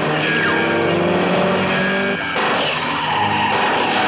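Film car-chase soundtrack: a car engine revving, its pitch rising through the first two seconds, with tyre squeal over background music. The sound turns noisier a little past halfway.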